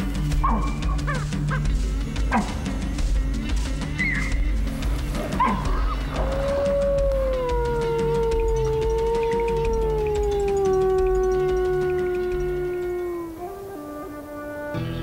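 Gray wolf howling: one long howl that starts about six seconds in and slowly falls in pitch before breaking off near the end, over a low music score. It is preceded by a few short calls.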